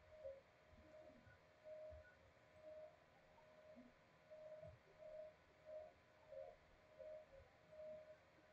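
Near silence: faint room tone with soft, short blips repeating about once or twice a second.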